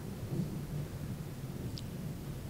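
Steady low rumble of room noise with no speech, and a short high squeak near the end.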